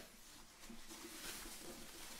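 Faint rustling of a soft white foam packing sleeve as an HDMI switch box is slid out of it and lifted.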